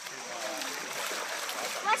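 Shallow creek water running over stones, with splashing from feet wading through ankle-deep water.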